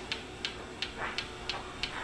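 Battery-powered hands-free electric can opener working its way around a tuna can's rim: a faint motor hum with a regular tick about three times a second. It runs slowly because its battery is going dead.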